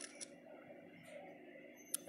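Quiet room tone, then a single sharp click near the end: a smartphone camera shutter sound as a photo is taken.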